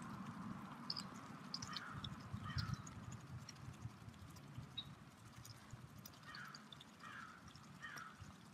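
Canada geese foraging on gravelly ground, faint light clicks from their bills pecking at the grit, with a few short, soft calls.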